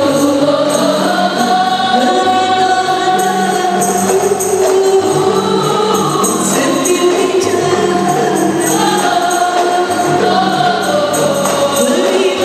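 A women's group singing a qasidah song together, held melodic lines, accompanied by rebana frame drums played in a steady rhythm.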